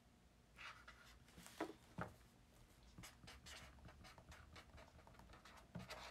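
Faint pen scratching on paper in short, irregular strokes, with a couple of sharper taps about two seconds in: writing or drawing by hand.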